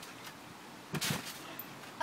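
A single short thump about a second in, a child's bare feet landing on a trampoline mat, over a faint background hiss.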